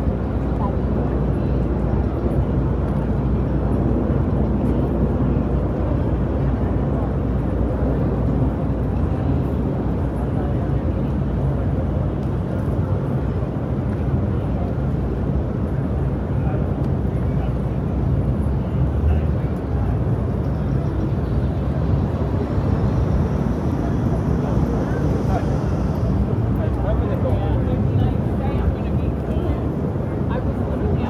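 Busy city street ambience: many passers-by talking over a steady low rumble of traffic.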